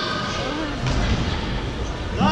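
Indistinct voices and calls of players and spectators in a reverberant indoor sports hall, over a low rumble that grows about a second in.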